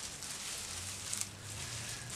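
Soft rustling of clear plastic gloves and hair as gloved fingers part and section the hair, with a brief louder rustle about a second in, over a low steady hum.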